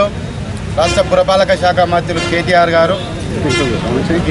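A man speaking Telugu in a steady, emphatic voice after a short pause, over steady outdoor background noise.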